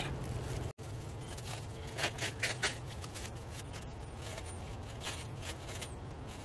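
Faint rustles and light scrapes of hands pulling plastic wrap off a freshly dyed skein of wool yarn and handling the damp yarn, over a low steady background. The sound drops out for an instant under a second in.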